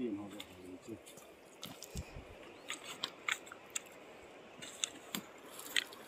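Pebbles clicking against each other as they are picked up and handled on a stony riverbank: a scatter of a dozen or so sharp, irregular ticks over the faint steady wash of the river.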